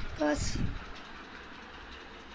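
A brief voice sound right at the start, overlapped by a soft low thump. After that comes faint, steady room noise with a low hum.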